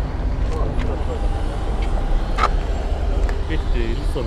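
Car engine idling steadily just after being started, heard from inside the cabin, with one sharp click about two and a half seconds in.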